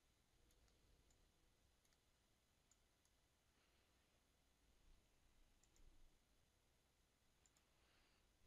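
Near silence, with a few faint, scattered computer mouse clicks.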